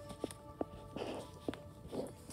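A plush toy being bumped and tapped against a hard panel: a few short, soft knocks with a brief rustle about a second in, over faint background music.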